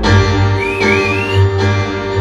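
Live rock band playing the intro of a song from the audience's position: bass and drums come in with a heavy low end over the sustained keyboard at the start, with guitar on top. A thin, wavering high tone sounds briefly in the middle.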